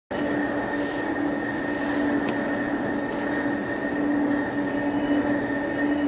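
Hurtigruten coastal ship's engines and ventilation machinery running steadily: a continuous drone with a held low tone and a thinner whine above it.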